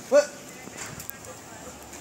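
A short, loud voiced shout with a rise-and-fall pitch just after the start, followed by low street background noise.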